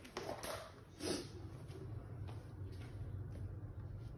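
Faint handling noise: two brief rustling scuffs in the first second and a half, then quieter small sounds, over a steady low hum.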